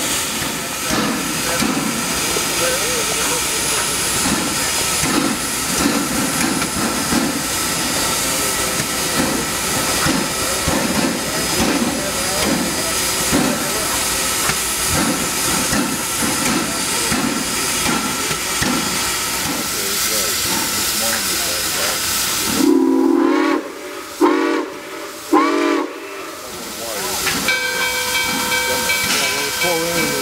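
Nickel Plate Road No. 765, a 2-8-4 Berkshire steam locomotive, moving slowly with loud steam hiss and slow, even exhaust chuffs. About 23 seconds in, its steam whistle sounds three short blasts, the railroad signal for backing up.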